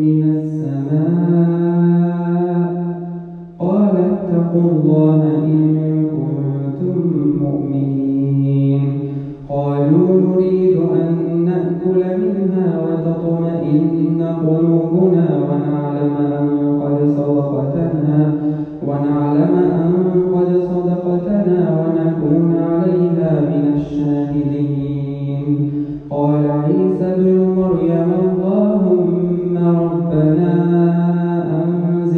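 A solo male reciter chants the Quran in slow melodic tajwid, holding long notes that bend up and down. Short breaks for breath fall between phrases, about 4, 10, 19 and 26 seconds in.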